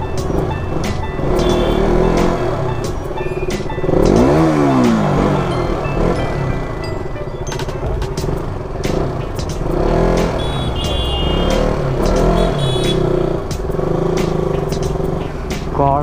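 Busy festival street din: crowd voices, music, and motorcycle and other vehicle engines mixed together, with many sharp clicks or strikes throughout. About four seconds in, an engine-like pitch dips and then rises.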